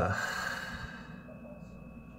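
A man's long breath out, a sigh, fading away over about a second and a half after a drawn-out "uh".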